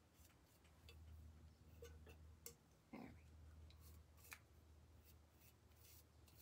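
Near silence, with faint scattered scrapes and light taps of a paintbrush working paint onto a metal tin can, over a low steady hum.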